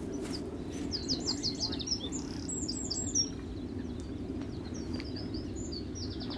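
Small bird singing a quick series of high chirping notes, over a steady low background rush.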